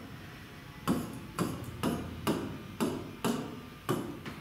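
A series of about seven sharp knocks, evenly spaced at roughly two a second, starting about a second in.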